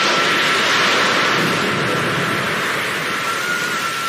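Animated sound effect of a huge ocean wave crashing over a ship: a loud rush of water that sets in suddenly and slowly dies away, with a faint held tone from the score underneath.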